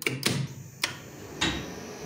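Elevator control-cabinet relays or contactors clicking three times, about half a second apart, as the lift takes a call. A steady hum sets in after the third click.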